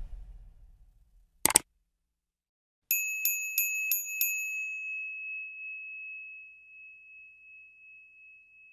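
Small bell sound effect: a quick double click, then the bell rings five times in quick succession, about three strikes a second, and the last ring fades away over a few seconds.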